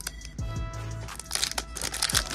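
Foil booster-pack wrapper crinkling as it is torn open, in a few crackly bursts in the second second, over background music with steady held notes.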